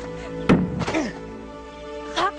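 Film soundtrack music with held sustained tones, cut by two sharp thuds: one right at the start and a louder one about half a second in, followed by a brief ring.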